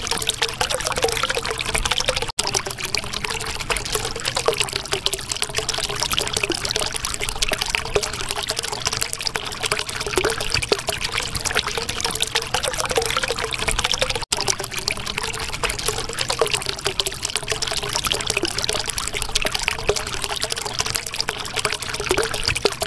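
Steady trickling, pouring water with small gurgles running through it, broken by two momentary dropouts: one a couple of seconds in and one about fourteen seconds in.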